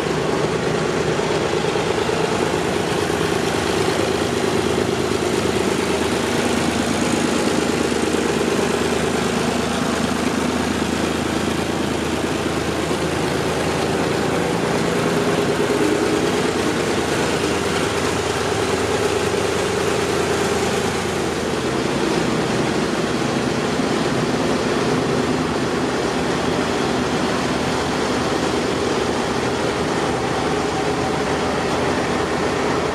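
Tractor engine running steadily at low revs as the tractor moves slowly along.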